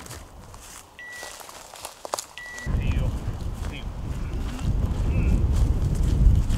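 Wind buffeting the microphone, a loud low rumble that sets in abruptly about two and a half seconds in and grows stronger. Before it, two short, steady high beeps.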